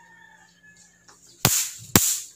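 Electric mosquito swatter zapping a mosquito: two sharp snaps about half a second apart, each with a brief crackling hiss after it.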